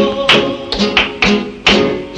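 Flamenco acoustic guitar accompanying a dance, its chords cut by sharp percussive strikes about every quarter to half second, each followed by ringing notes that fade before the next.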